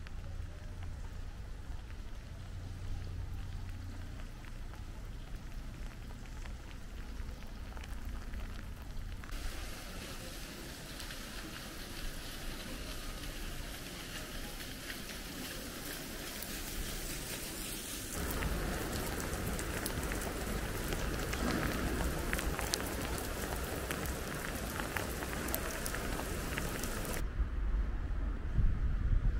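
Rain falling steadily on wet stone paving, an even hiss with a low rumble under it at times. It steps louder twice, about a third and two thirds of the way through.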